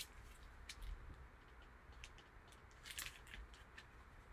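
Faint clicks and taps of hard plastic card holders being handled, with a small cluster of them about three seconds in.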